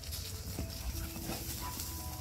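Two dogs, a Siberian husky and a white Alaskan Malamute, playing and running about, heard as quick irregular scuffling noises, over soft background music with held notes.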